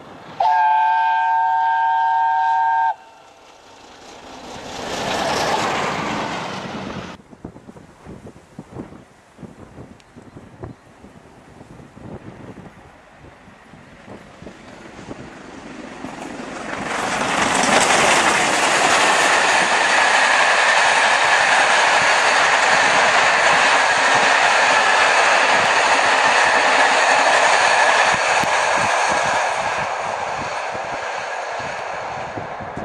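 A steam locomotive's whistle sounds a steady chord of several notes for about two and a half seconds and stops sharply, followed by a swell of rushing noise. From about seventeen seconds a steam-hauled train passes close by, a loud steady rushing and rolling noise of locomotive and carriages that holds to the end.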